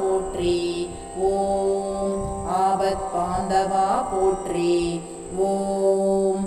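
Tamil devotional potri chant sung over a steady drone accompaniment in Carnatic style, the melodic line holding notes and gliding between them.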